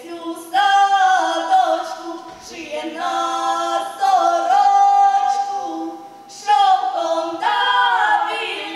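A girls' folk choir singing a Ukrainian folk song a cappella, in three long drawn-out phrases with held notes and brief breaths between them.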